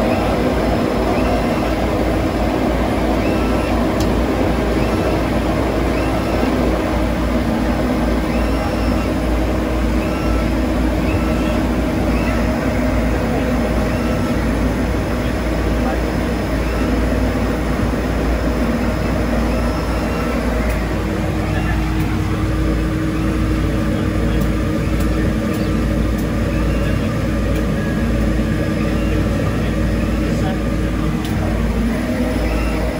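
The Twin Otter's two Pratt & Whitney Canada PT6A turboprop engines and propellers running at low taxi power, a steady drone heard from inside the small cabin. The pitch of the drone shifts about two-thirds of the way through.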